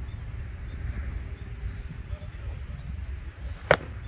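A golf club striking a ball off a practice hitting mat: one sharp crack about three and a half seconds in, over a steady low rumble.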